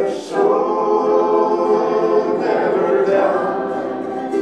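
Several voices singing together in harmony, holding long sustained notes with a change of chord about two and a half seconds in.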